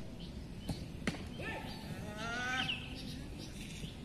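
Football training at a distance: two sharp ball kicks about a second in, then a voice calling out at length across the pitch.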